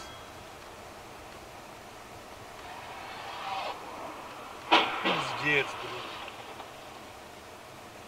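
A car collision in the junction ahead: one sharp, loud bang of impact about four and a half seconds in, picked up from inside the filming car's cabin.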